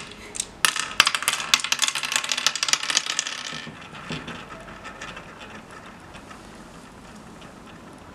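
Hard round oware seeds clicking and clattering into the pits of a wooden oware board as a player sows them: a rapid run of small clicks, then a few scattered clicks that die away.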